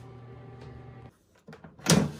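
A steady low hum cuts off about a second in. Near the end comes a loud plastic clack as an air fryer's basket drawer is unlatched and pulled open.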